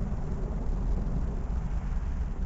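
Low, fluttering rumble of wind buffeting the camera microphone outdoors, with no other distinct sound.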